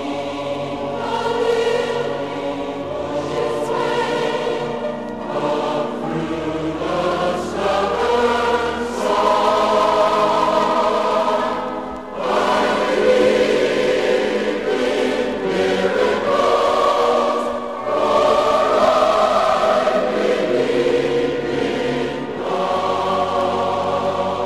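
Choir singing a slow sacred song in long held phrases, with short breaks between phrases about twelve and eighteen seconds in.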